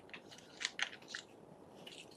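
A handful of short, crisp clicks and crackles in quick succession, the loudest two a little over half a second in and just under a second in.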